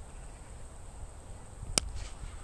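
A cricket bat striking the ball: one sharp crack near the end, over a low background rumble.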